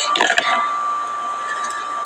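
A short vocal sound at the very start, then steady background hiss with a constant thin high-pitched tone.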